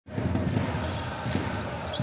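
Arena crowd murmuring during a basketball game, with a basketball bouncing on the hardwood court a few times.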